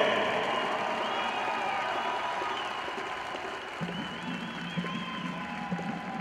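Stadium crowd applauding and cheering after a marching band performance, slowly fading. A low steady tone comes in about four seconds in.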